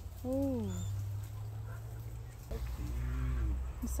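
A woman's wordless, drawn-out 'oh' about a quarter second in, rising then falling in pitch, and a softer hummed 'mm' about halfway through, over a steady low rumble of handling or wind noise on the phone's microphone.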